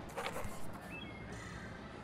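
A crow cawing once, a harsh short call just after the start, over a low steady background hum.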